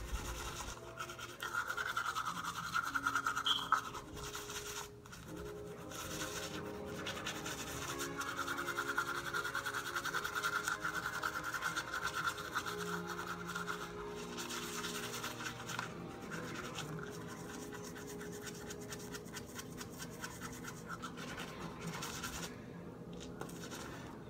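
Manual toothbrush scrubbing teeth through a mouthful of toothpaste foam: rapid, continuous back-and-forth scratchy brushing strokes.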